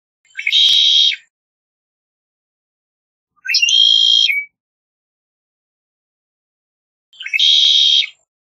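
Male red-winged blackbird singing: three short, harsh trilled phrases, each about a second long and about three seconds apart, the middle one shaped differently from the first and last.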